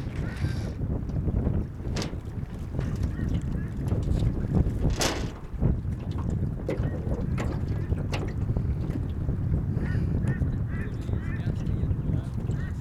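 Wind buffeting the microphone outdoors: a steady low rumble with a brief louder rush about five seconds in and a few small clicks.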